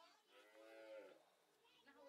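A faint, distant call from a livestock animal, under a second long, its pitch dropping at the end.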